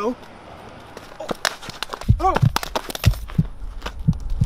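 A few sharp knocks and scuffs on concrete about a second in, as a person falls onto the sidewalk and drops a phone. About three seconds in, a heartbeat sound effect begins: paired low thumps about once a second.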